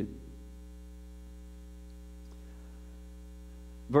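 Steady electrical mains hum: a low, unchanging drone with several fainter steady tones above it, and no other clear sound.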